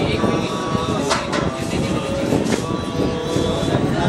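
Several men's voices chanting mantras together in a continuous, dense drone over a low rumble, with a few brief sharp clicks about a second in and again midway.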